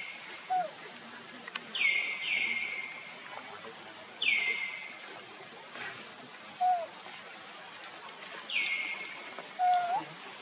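Bird calling four times, each call a quick downward sweep that settles on a short held note, over a steady high insect whine. A few faint lower whistles come between the calls.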